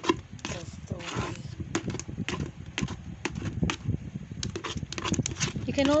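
Liquid soap being stirred by hand with a stick in a bucket: irregular knocks and clicks of the stick against the bucket with wet, thick sloshing.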